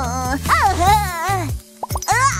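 Animated character's wordless vocal sounds over light children's background music, ending with a short cartoon plop sound effect near the end.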